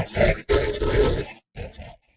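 Robot voice built in Reformer Pro from synth engine sound libraries, treated with tremolo, phaser, echo and saturation: a harsh, gritty sound that keeps the cadence of a spoken line, in three phrases with short gaps. It is a nasty aggressive robot.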